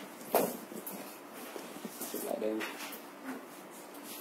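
Chalk drawing on a blackboard: a sharp tap about a third of a second in, then light scratchy strokes. A short low voiced murmur comes about halfway through.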